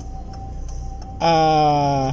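A man's voice drawing out one long, level-pitched "the" about a second in, over the steady low hum of a car's idling engine and a faint thin steady tone inside the cabin.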